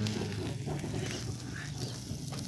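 Faint, steady sizzling of beef satay skewers grilling on a wire rack over a charcoal fire, with scattered light ticks.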